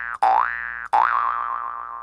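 Cartoon "boing" sound effect played in quick succession: short springy tones that each slide up in pitch and fade. The last one wobbles as it rings out.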